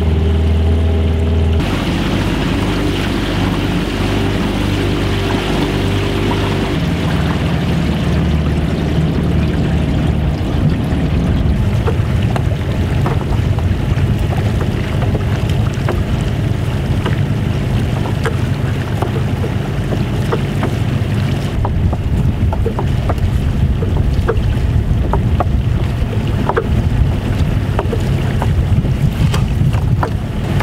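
A small fishing boat's motor running steadily, its pitch shifting a couple of times early on. Partway through, many short sharp clicks and knocks come in over it as a gillnet with floats is hauled aboard the wooden boat.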